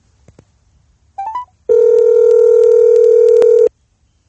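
Telephone call tones: a quick rising three-note chime, then a single loud, steady ringback tone lasting about two seconds that cuts off sharply.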